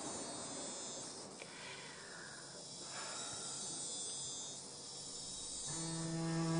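Faint background of insects chirping, a steady high-pitched shimmer. Near the end a low bowed cello note of the score comes in.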